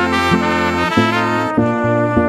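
Instrumental band music with no singing: a brass-sounding melody held over a bass line that steps from note to note in a steady rhythm.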